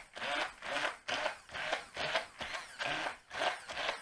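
Stick blender puréeing boiled rutabaga cubes in a pot. The sound comes in surges about twice a second as the blender is worked down into the chunks.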